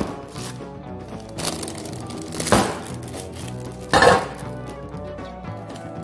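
Background music with three short knocks of a metal loaf tin handled on a steel counter: one as the tin is set down, then two more about two and a half and four seconds in as the loaf is lifted out of it.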